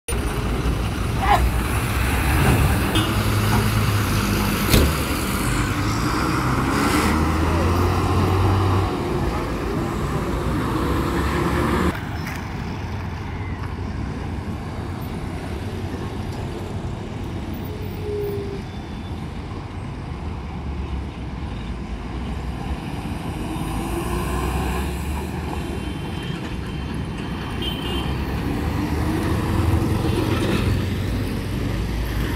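MSRTC diesel buses running and passing close by, their engine notes rising as they pull away. After an abrupt drop in level about twelve seconds in, quieter road traffic follows, with more buses and a motorcycle going past.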